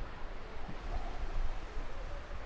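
Ocean surf washing onto the beach, a steady, even rush, with wind buffeting the microphone in a low rumble.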